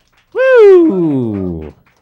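A person's voice giving one drawn-out cry that rises briefly, then slides steadily and far down in pitch for about a second and a half.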